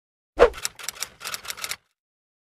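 Logo-intro sound effect: a sharp hit with a falling pitch, then a quick, irregular run of about a dozen clicks that stops just before the logo settles.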